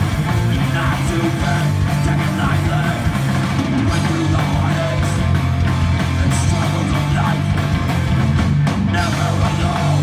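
Hardcore band playing live: distorted electric guitar, bass guitar and drums, with vocals through the PA, loud and steady.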